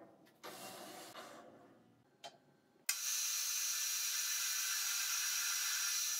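Metal lathe running steadily while drilling with a tailstock-mounted drill chuck; it starts suddenly about three seconds in with an even, high whirring hiss and no deep hum. Before it, a short fading rubbing noise and a single click.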